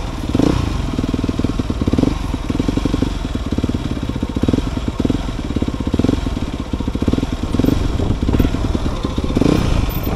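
Dirt bike engine running at low revs on a rough downhill trail. The note rises and falls with short throttle blips every second or two, over the clatter of the bike.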